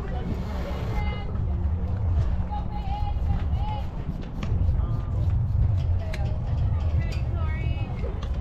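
Scattered voices of spectators and players at a softball game, short bits of talk and calls, over a steady low rumble of wind on the microphone, with a few faint clicks.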